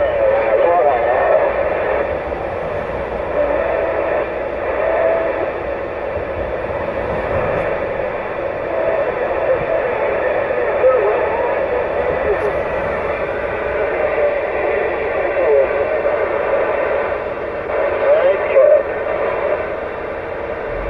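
Cobra 148GTL CB radio's speaker carrying another station's voice transmission, muffled and garbled amid static so that the words can't be made out.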